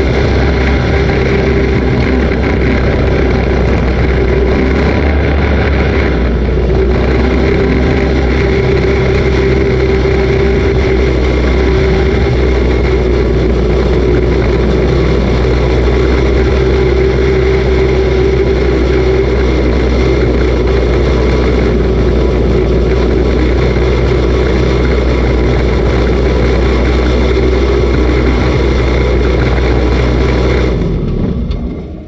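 Dirt-track race car's engine running steadily at low revs, heard loud from inside the cockpit, with no revving.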